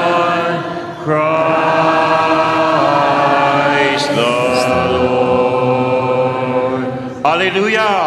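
Voices chanting a slow sung refrain together, with long held notes. New phrases begin about a second in, about four seconds in, and again near the end.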